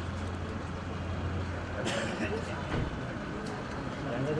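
A car engine idling with a steady low hum under crowd voices, and a couple of sharp clicks near the middle.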